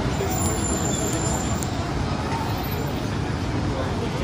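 Busy city street ambience: steady traffic noise mixed with the chatter of a crowd of people.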